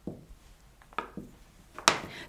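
Non-stick plastic rolling pin rolling over sugar paste on a worktop, making a few light clicks and knocks. A sharper knock comes near the end as the pin is set down on the worktop.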